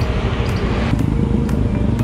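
Steady low rumble of street traffic, with wind on the microphone, and a faint regular ticking about twice a second.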